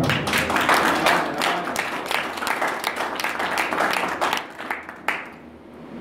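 A small audience clapping, dense at first, then thinning out and dying away about five seconds in.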